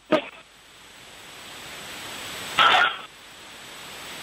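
Two short voice sounds from a man, a brief one at the start and a fuller one about two and a half seconds in, over a steady background hiss.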